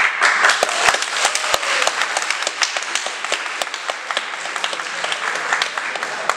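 A small audience applauding, separate claps distinct, starting suddenly and easing off slightly towards the end.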